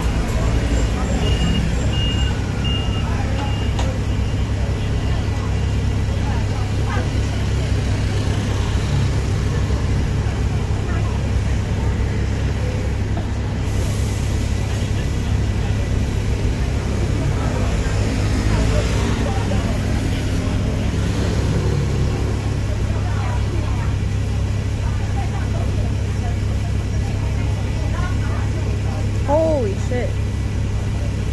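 City street traffic: buses and cars running past with a steady low rumble. A few short high beeps sound about a second in.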